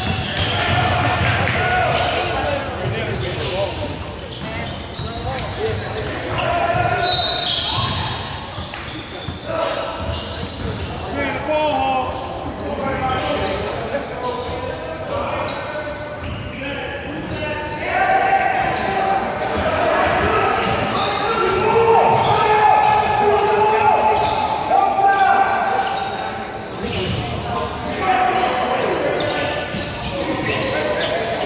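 Basketball game sounds echoing in a large gym: the ball bouncing on the hardwood floor, with voices of players and onlookers calling out and talking throughout.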